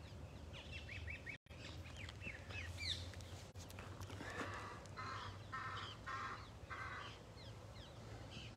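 Faint wild birds calling: many short, high, falling chirps in the first few seconds, then a run of four harsh, caw-like calls about half a second apart in the second half.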